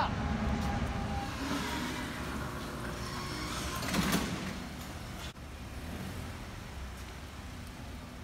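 Hyundai Elantra sedan driving slowly into a service bay, a low steady running rumble with a louder swell about four seconds in.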